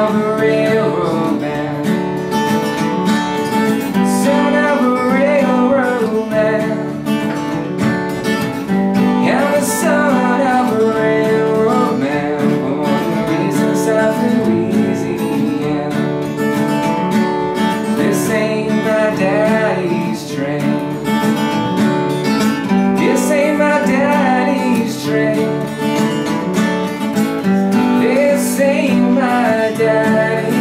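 Acoustic guitar strummed in a steady rhythm, with a man singing phrases over it every few seconds.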